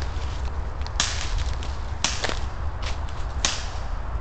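Airsoft gun fired in single shots: about five sharp cracks at uneven intervals, starting about a second in.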